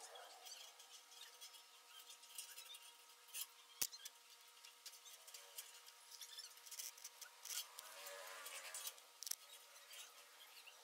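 Faint scraping and ticking of a steel wire rope being fed by hand through a welded rebar cage, with one sharper click about four seconds in.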